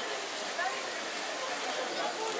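Busy pedestrian shopping street: nearby passers-by talk in snatches over a steady wash of crowd and street noise.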